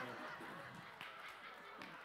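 Congregation laughing at a joke, faint and dying down.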